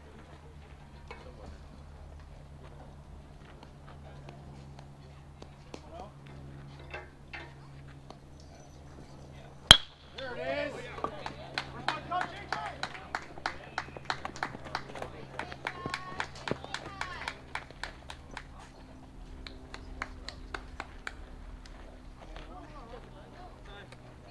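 A bat strikes a baseball with one sharp, loud crack about ten seconds in. Spectators shout and cheer right after, with scattered clapping, for several seconds before it dies down.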